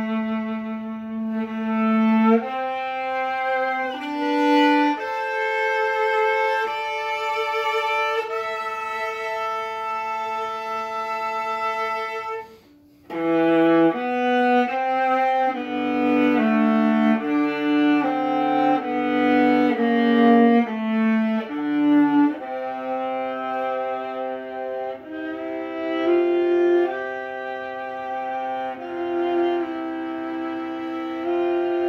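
Solo viola played with the bow: long sustained notes, a brief pause about halfway, then more quickly changing notes, some played as two-note double stops.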